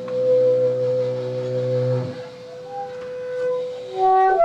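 Free-improvised jazz: an upright double bass bowed in a long sustained note that stops about two seconds in, against a steady higher note held almost to the end.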